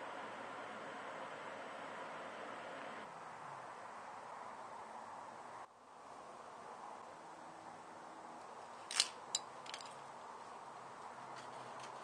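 Faint steady background hiss with a few short, sharp clicks about nine seconds in.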